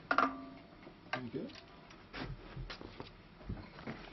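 Handling noise of a gut lyre string at the tuning pins as it is pulled to low tension: a brief pitched ring near the start, then several light ticks and knocks.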